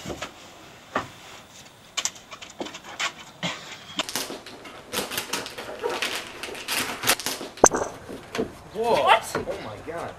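Gift-wrapping paper crackling and tearing as a wrapped box is gripped and wrestled with. A few separate knocks and rustles come first, then a dense stretch of crackling in the middle, and a short strained voice near the end.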